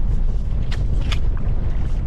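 Strong wind buffeting the microphone, a steady low rumble, with two brief hissing sounds near the middle.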